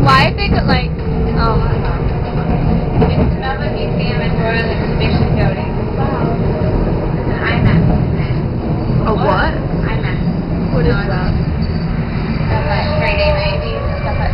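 Tram running along its tracks, a steady low rumble heard from inside the carriage, with voices talking over it now and then.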